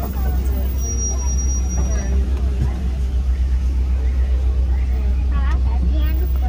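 Safari ride truck's engine running with a steady low rumble as it drives, with passengers' voices chattering around it.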